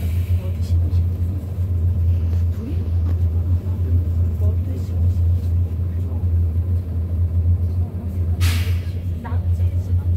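Steady low rumble of a city bus heard from inside the passenger cabin as it drives, with a short hiss about eight and a half seconds in.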